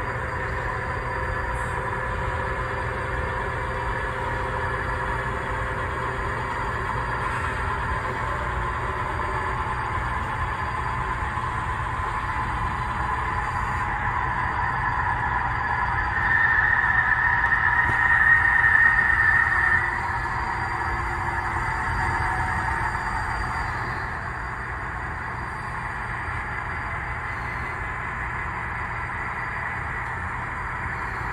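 Model freight train running on the layout behind four model diesel locomotives, SD40-2s and an SD45: a steady mechanical running hum. It grows louder and higher-pitched for a few seconds about two-thirds of the way through, then eases off.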